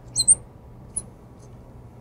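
Marker squeaking on a glass lightboard as numbers are written: a quick pair of short high squeaks near the start and another single squeak about a second in.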